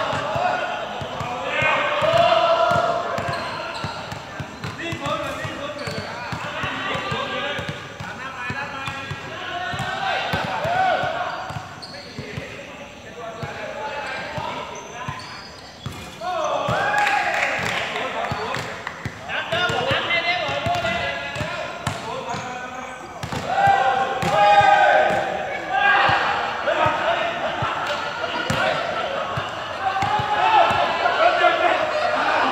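A basketball bouncing on a hard court, with repeated sharp impacts, under loud shouting and calling between the players.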